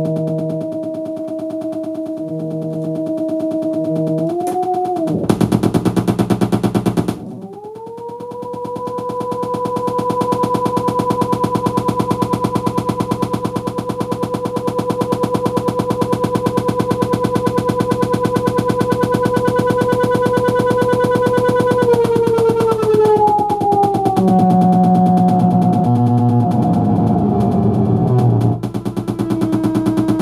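Electronic tones from THE Analog Thing analog computer running a chaotic Sprott system, its output heard as oscilloscope music. A droning tone with overtones bends in pitch as the coefficient knobs are turned, then breaks into about two seconds of loud noise. A long steady tone follows, glides down near the end and gives way to pulsing low notes.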